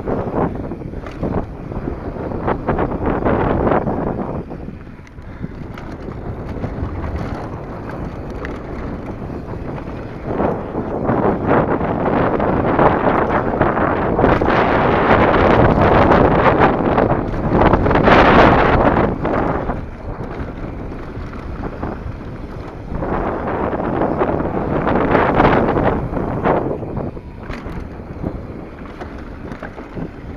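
Wind rushing over the microphone and mountain bike tyres rolling over a dry dirt trail on a fast downhill ride, with frequent knocks and rattles from bumps. The rush swells louder in the middle of the ride and again later on.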